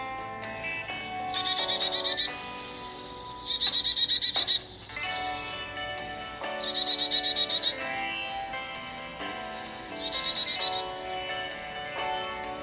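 Soft guitar background music, with a bird's call sounding over it four times: each a quick downward slur into a rapid, high trill about a second long.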